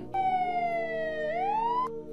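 Police siren sound effect: one wail that falls slowly in pitch, then rises quickly and cuts off suddenly near the end.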